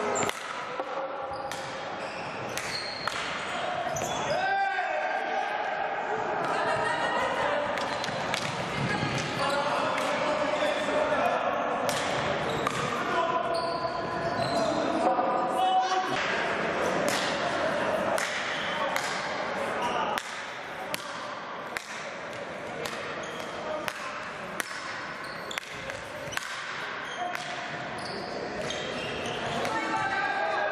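Indoor hockey play in a large, echoing sports hall: repeated sharp clacks of sticks striking the ball and the ball knocking on the floor and side boards, scattered unevenly, with voices calling out.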